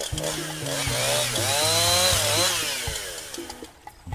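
A sound effect: a noisy swell that builds for about two seconds and fades away near the end, its pitch rising and then falling, over a background music track.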